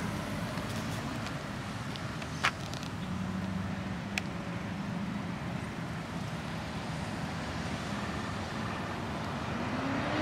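A 2003 Mitsubishi Lancer driving slowly away at low speed, giving a steady low engine and road hum. Two short clicks come about two and a half and four seconds in.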